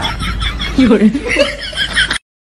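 A man laughing in broken, breathy chuckles over a low rumble.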